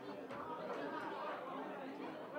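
Indistinct chatter of many overlapping voices in a large hall, with no single voice standing out.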